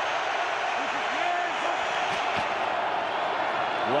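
Steady stadium crowd noise, with faint shouting voices under it.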